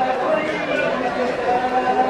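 Several voices chanting a Solung dance song together, with held notes, over a crowd talking in a large hall.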